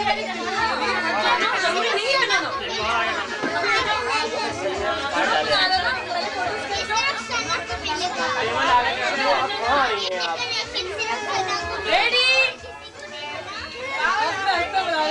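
Many voices of adults and children talking over one another. A high voice rises sharply about twelve seconds in, and the talk then drops for a moment.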